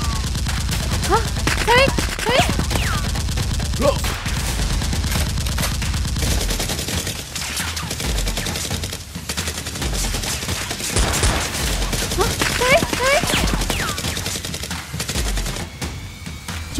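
Rapid automatic gunfire sound effects, a dense run of shots, with a few short shouts over them.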